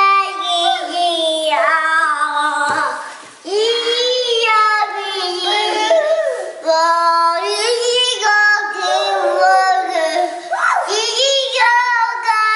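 A young girl singing in a high child's voice, holding long notes in phrase after phrase, with a short break about three seconds in.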